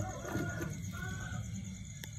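Crickets trilling steadily, with a couple of faint, brief higher calls about half a second and a second in.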